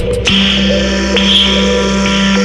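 Live loopstation beatbox: layered vocal loops played back through a PA with electronic, dubstep-like textures. The percussive beat cuts out about a quarter second in, leaving a sustained low bass note under held higher layers.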